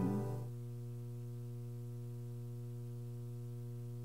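The end of a guitar-accompanied children's song dies away in the first half second. After that a steady low electrical hum with a buzzy row of overtones carries on, with nothing else over it.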